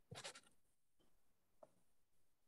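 Near silence on a video-call microphone, broken by a short, faint scratchy rustle just after the start and one faint tick about a second and a half in.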